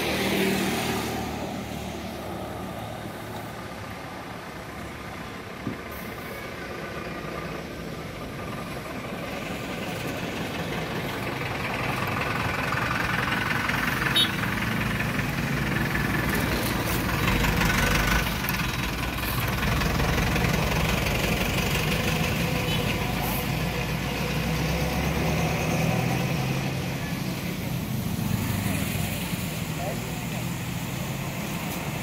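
Motor vehicle engines running on the road alongside, the engine hum growing louder about a third of the way in and staying up, with people talking in low voices underneath.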